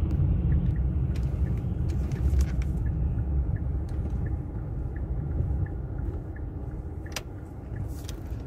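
Low road and engine rumble inside a car's cabin as it slows down, fading toward the end. A faint regular ticking of the turn signal runs about twice a second, and there is one sharp click about seven seconds in.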